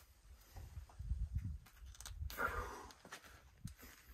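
A climber's sharp, breathy exhale of effort a little over two seconds in, among low thuds and scuffs of his body and shoes moving on the sandstone overhang.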